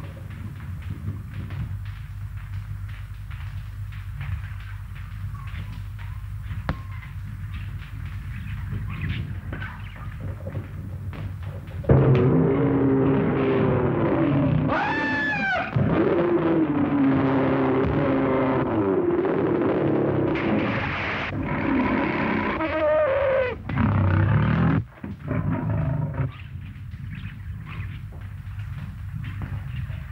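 Steady low hum and hiss of an early sound-film track. About twelve seconds in, a big cat's roaring and snarling breaks in loudly and goes on in several long, rising and falling calls for about fourteen seconds before dropping back to the hiss.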